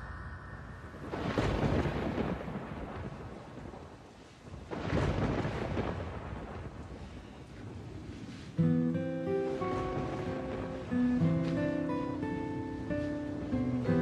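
Two rolls of thunder over steady rain, each swelling and dying away over about two seconds. About eight and a half seconds in, acoustic guitar music begins.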